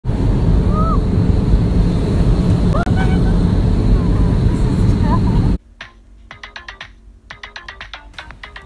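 Steady loud low roar of an airliner cabin. It cuts off suddenly about five and a half seconds in, and light plucked intro music follows.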